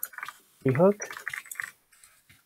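Computer keyboard typing: a quick run of keystroke clicks, with a short voiced murmur from the typist just before them.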